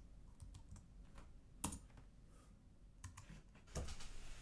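Faint computer keyboard keystrokes and mouse clicks, a few scattered taps, the sharpest about one and a half seconds in and near the end.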